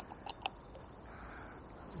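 Quiet riverside background with one sharp click at the start and two or three fainter clicks just after.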